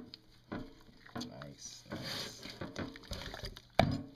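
Wet squelching of hands working marinade into a raw pork shoulder, with a sharp knock near the end.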